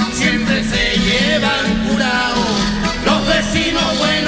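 Chilean cueca sung by a man over acoustic guitar and accordion.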